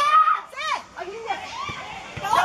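Young voices shouting and calling out, high-pitched and sliding in pitch, loudest in the first second and fading after.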